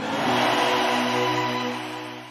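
Logo-animation sting: a whooshing swell with a held synth chord over it, fading away near the end.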